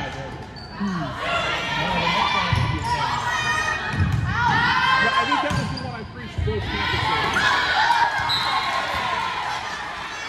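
Indoor volleyball rally on a gym's hardwood floor: thuds of ball contacts, repeated high-pitched squeaks of sneakers, and players' and spectators' voices, all echoing in the gym.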